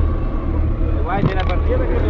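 A short burst of speech, about a second in, over a steady low rumble.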